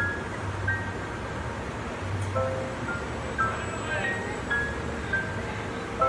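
Background music playing from outdoor loudspeakers: short high melodic notes over a low pulsing beat.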